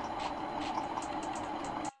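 Steady mechanical hum with faint ticks, cutting out abruptly just before the end.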